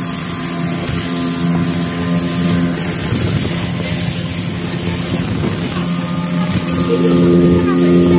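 Speedboat engine running steadily at speed, over a constant hiss of rushing water and wind.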